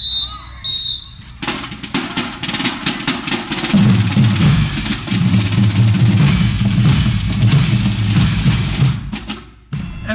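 A brass band playing in a street parade: a high steady whistle-like tone at the start, then drums come in about a second and a half in, and the horns and low brass join around four seconds in. The music stops abruptly just before the end.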